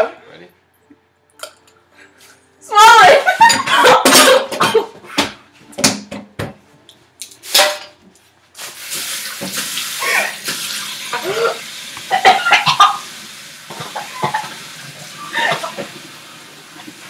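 Coughing and gagging on a dry mouthful of ground cinnamon, with a run of sharp coughs. From about halfway a tap runs steadily, with more coughing over it.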